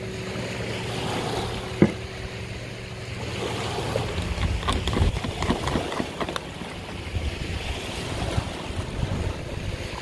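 Small waves washing in at the water's edge with wind on the microphone, over a wire whisk beating batter in a plastic container, its strokes ticking against the sides. A low steady hum fades out about three seconds in.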